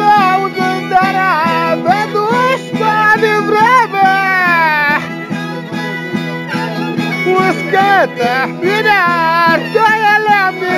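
Oaș folk music: a ceteră (fiddle) plays a high melody full of slides and ornaments over a zongora strummed in a steady, quick beat.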